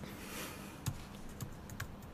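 A handful of faint, irregularly spaced taps on a laptop keyboard.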